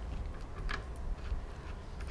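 A few faint, light clicks of a metal bolt and washer being handled and fitted by hand into a floor hole, over a low background hum.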